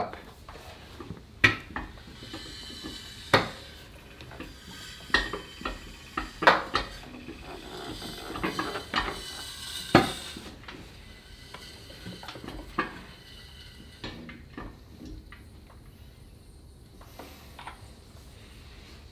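Exhaust VVT unit on a Volvo B5254T five-cylinder clicking as the engine is turned over slowly by hand with a wrench on the crank: sharp metallic clicks at irregular intervals of a second or two over a light rattle. The clicking is what the VVT does when it has no oil in it.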